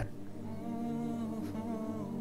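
Soft wordless humming: a voice holding long, steady notes.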